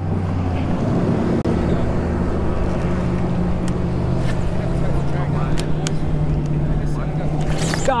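A steady low motor drone with a few faint short clicks through it.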